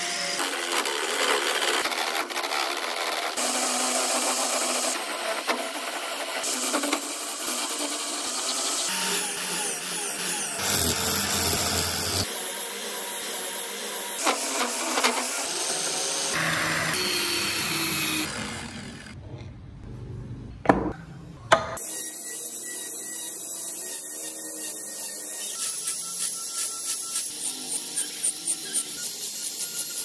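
Wooden wheel blank spinning on a homemade drill-driven lathe while a hand chisel cuts into it, heard in short clips that change abruptly. A couple of sharp knocks come about two-thirds of the way through, then a quieter run of short repeated scraping strokes as tyre tread is cut into the wooden wheel with a small rotary tool.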